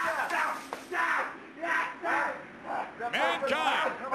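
Shouting voices in short bursts, with a loud, high-pitched yell about three seconds in.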